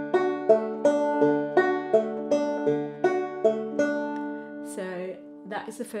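Five-string banjo in open G tuning, fingerpicked on a D chord shape in a repeating four-note pattern: fourth string, first, third, second. The single plucked notes come about three a second, then stop after about four seconds and are left ringing.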